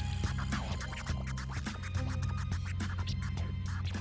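Hip hop instrumental with a heavy, steady bass line and a regular beat, with DJ record scratching over it.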